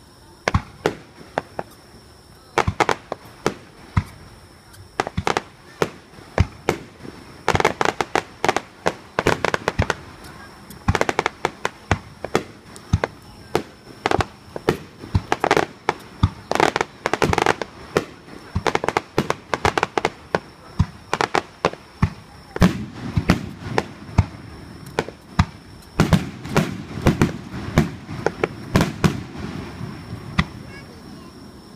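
Fireworks display at close range: a fast, irregular run of sharp bangs from aerial shells launching and bursting, massing into dense volleys twice. Deeper, heavier bursts come in the last third.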